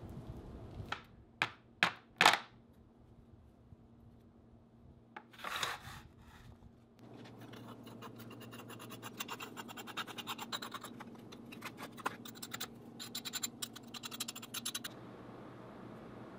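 Oil-bonded casting sand (Petrobond) being scraped off a freshly cast pewter bar with a small metal tool: a rapid run of scratching that makes up the second half. It is preceded by a few sharp knocks and a short rustle as the castings come out of the sand.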